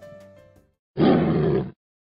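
Background music fading out, then a single loud, rough burst of sound lasting under a second, starting about a second in and stopping abruptly.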